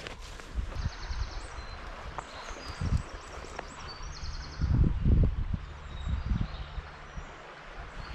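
Footsteps through long grass, with irregular heavier steps and rustling, the strongest a few seconds in.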